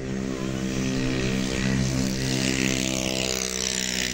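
An engine running steadily, with a brighter, noisier stretch in the middle.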